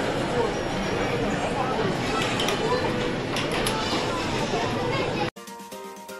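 Busy arcade din: mixed voices and electronic game sounds, with a few sharp clicks. About five seconds in it cuts to a thinner, steady electronic jingle from a children's whack-a-mole-style arcade game.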